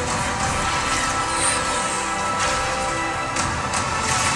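Film trailer soundtrack: sustained music holding steady chords, with a few short sharp sound-effect hits and whooshes over it.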